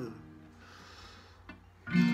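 A strummed steel-string acoustic guitar chord dies away. It is followed by a soft intake of breath and a faint click. A new strummed chord and singing come in just before the end.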